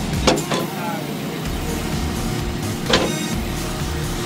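Steady pit-area din with music and voices under it, broken by three sharp knocks, two close together near the start and one about three seconds in, as racing tyres are handled at a trailer.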